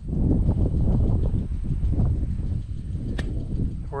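Low rumbling noise on the microphone of a camera worn against the body, with a single sharp click about three seconds in.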